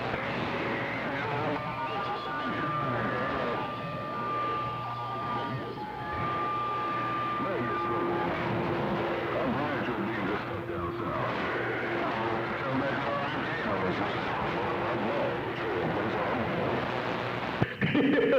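CB radio receiving on channel 6 (27.025 MHz) during skip: a jumble of distant voices talking over one another through static, none of them clear. Steady whistle tones come and go in the hiss, one high for several seconds early on, then a lower one through the middle.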